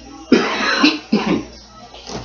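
A person coughing in three loud bursts in the first second and a half, over faint background music.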